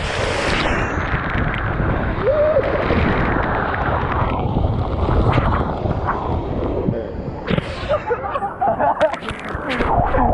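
Water rushing and spraying around a person sliding down an open water slide, heard close up, with a short whoop about two and a half seconds in. Near the end come a series of sharp splashes as the rider reaches the pool.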